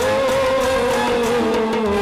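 Band music: a sustained lead melody with small pitch bends, over drum beats from an electronic percussion pad struck with drumsticks.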